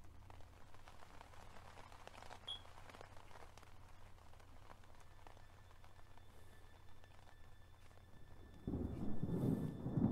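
A faint, low, steady rumbling drone from a horror short's soundtrack. A louder sound comes in near the end.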